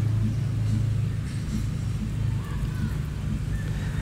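A steady low hum with a couple of held low tones, of a motor vehicle engine running.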